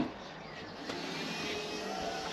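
Steady rushing background noise with a faint hum, growing a little louder about a second in.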